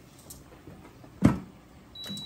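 A single sharp knock just over a second in, against faint room noise.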